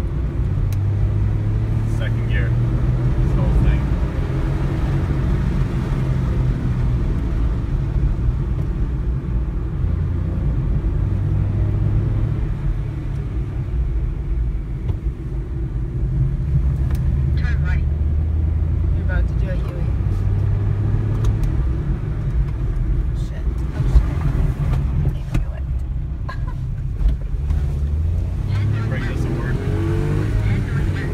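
Car engine and road noise heard from inside the cabin as a rental car is driven hard up a winding mountain road, the engine note rising and falling as the driver works the revs through the bends.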